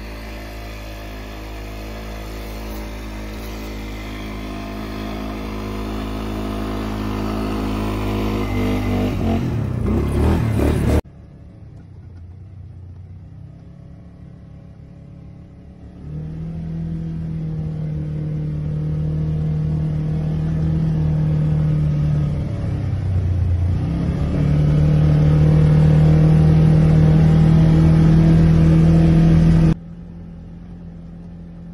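ATV engine getting steadily louder over about ten seconds as the quad approaches, its pitch bending just before it stops abruptly. After a few quieter seconds, an ATV engine is heard from the rider's seat, running at a steady pace with a brief drop in revs partway through, until it cuts off suddenly.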